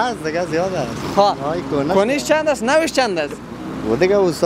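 Men talking, with car traffic on the street in the background.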